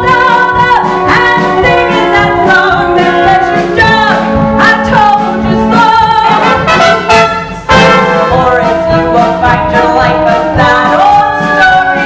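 Live pit orchestra playing a show tune, woodwinds and brass over percussion, with a short break and a loud accent about two-thirds of the way in.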